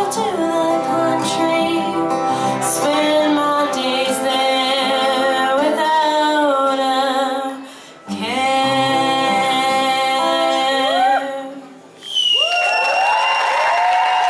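A woman singing a slow melody live into a microphone, with acoustic guitar behind her, her held notes sliding between pitches; the sound drops out briefly twice, about 8 and 12 seconds in. After the second break the crowd cheers, with a long, high whistle.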